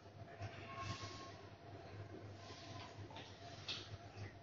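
Faint steady low hum, with a short thin tone about a second in and a couple of soft brief rustles.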